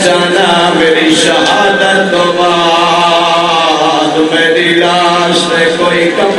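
A man's voice chanting a mourning lament in long, drawn-out melodic lines, amplified through a microphone.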